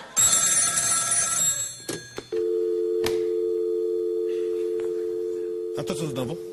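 A telephone bell rings for about a second and a half. After a couple of clicks, a steady low telephone tone runs on to the end.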